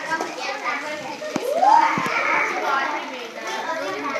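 A group of children talking and exclaiming over one another, with one child's voice rising sharply in pitch about one and a half seconds in, the loudest moment.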